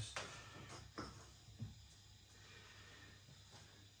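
Near silence: room tone, with two faint short knocks about a second apart.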